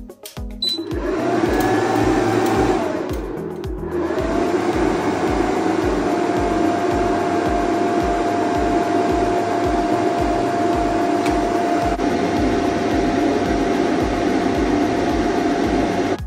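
A short high beep as a 2000 W pure sine wave inverter switches on. Its cooling fans then spin up to a loud, steady whir with a whine, under a load of about 1280 W. The whir dips for about a second around three seconds in, then spins up again and holds.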